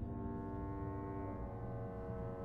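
Symphony orchestra holding a quiet sustained chord, its notes steady, with low notes sounding underneath.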